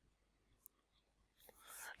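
Near silence: room tone, with a faint click about two-thirds of a second in and a soft breath near the end.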